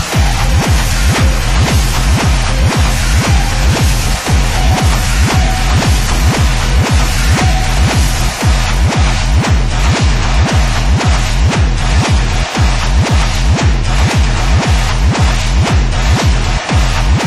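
Instrumental industrial EBM: a steady, evenly repeating electronic kick-drum beat under dense, noisy synthesizer layers.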